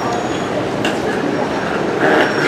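Steady traffic noise from an airport's curbside road, with faint voices in it.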